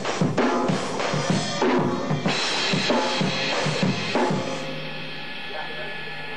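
Acoustic drum kit played in a fast run of bass drum, snare and cymbal hits. The playing stops a little over four seconds in, leaving the cymbals ringing out.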